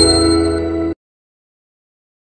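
Last held chord of an outro jingle with a bright chime ringing over it, fading and then cutting off abruptly about a second in.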